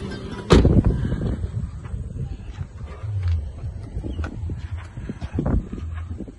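A Toyota Allion's car door shutting with a loud thump about half a second in, then low wind rumble on the microphone with small scuffs and ticks, and a second thump near the end as the boot lid is opened.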